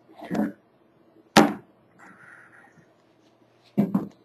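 Hand-operated West System metering pump on an epoxy hardener can being pressed to dispense a half pump into a mixing cup: a few sharp plastic clacks, the loudest about one and a half seconds in and a pair near the end, with a short hiss around two seconds in.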